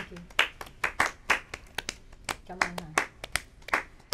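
A small group of people clapping by hand, a sparse, uneven run of about three to four claps a second.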